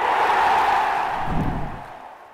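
Outro sound effect: a rushing swell of noise that builds, holds for about a second and a half and fades out, with a low thud near the end.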